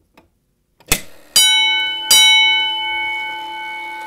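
Edwards 323D 10-inch single-stroke fire alarm bell struck twice, about three-quarters of a second apart, each stroke ringing on and slowly fading: a coded pull station coding out two rounds. A sharp click from the pull station's mechanism comes just before the first stroke.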